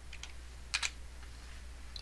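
Computer keyboard keys being typed: a few light keystrokes, with two sharper clicks close together a little under a second in.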